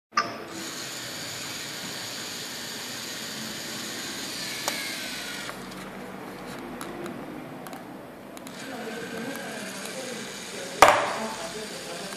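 LEGO Mindstorms robot's servo motors whirring as its claw grips and lifts the ball, with a short falling whine about halfway through. After a quieter stretch the motors whir again, and near the end the ball lands in the box with a sharp thump.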